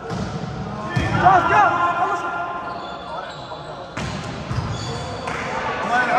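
Indoor volleyball rally in an echoing sports hall: the ball is struck with sharp hits about a second in and again at four seconds, with short rising-and-falling sneaker squeaks on the court floor and players' calls.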